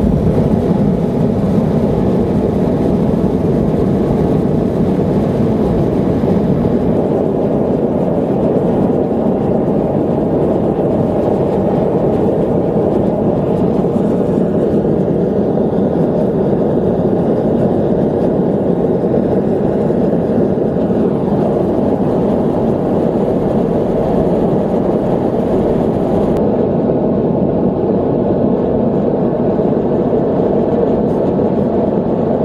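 Gas forge burner running steadily and loudly at full flame. The sound turns duller about four seconds before the end as its hiss fades.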